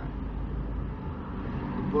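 Steady low rumble of a car being driven, heard from inside the cabin: engine and road noise.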